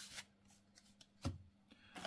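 Yu-Gi-Oh trading cards handled quietly, with one short soft knock about a second and a quarter in and faint rustles near the end.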